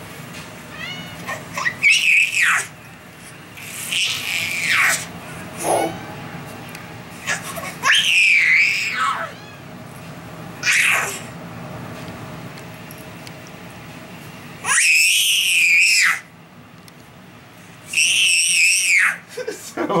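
Baby squealing with delight, about six high-pitched shrieks, each about a second long, rising and falling in pitch.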